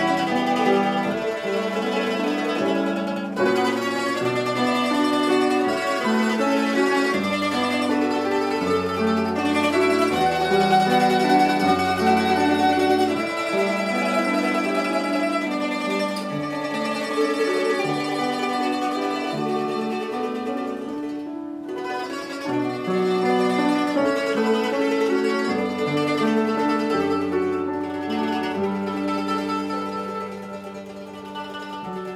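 Mandolin ensemble of two mandolins and a mandola with piano playing a gentle melodic piece, the piano sustaining the bass line. The music breaks off very briefly about two-thirds of the way through, then continues and softens near the end.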